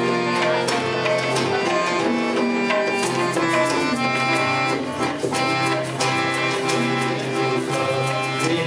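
Instrumental music of a harmonium playing held notes and melody over tabla drumming, with the tabla strokes growing busier about three seconds in.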